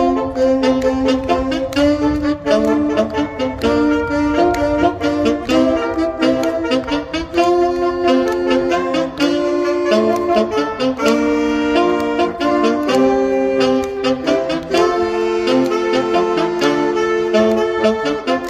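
Saxophone ensemble playing a tune in several-part harmony, held chords and moving melody lines, with no drums or backing track.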